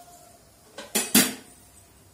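Two sharp clinks of metal kitchen utensils, about a quarter second apart a second in, the second louder.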